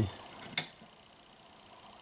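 A single sharp click from a lamp socket's three-way turn-knob switch, about half a second in, followed by a faint steady high-pitched tone.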